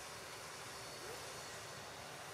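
Steady outdoor background noise: an even, faint hiss with no distinct sound events, and a faint short rising note about a second in.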